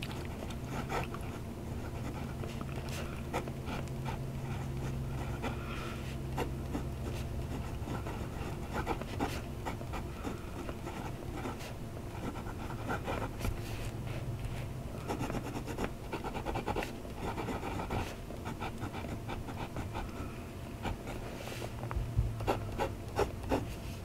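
Fine steel #8 nib of a Jinhao X159 fountain pen scratching faintly across grid paper in short, irregular strokes as words and zigzag test lines are written. A steady low hum runs underneath.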